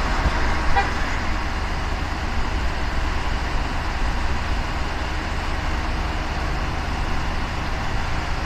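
Steady low rumble and hiss of idling emergency vehicles and traffic, with a short pitched toot or beep under a second in.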